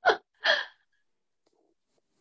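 Two short breathy vocal bursts from a person, about half a second apart.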